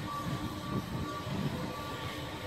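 Room tone of a large indoor hall: a steady low hum of background noise, with nothing sudden in it.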